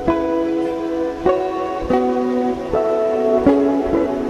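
Guitar played solo, plucked notes and chords in a slow melody, a new note about every second or less, each left ringing into the next.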